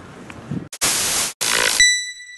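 Logo sting sound effect: two loud bursts of hissing noise about a second in, then a single bright chime that rings out and slowly fades.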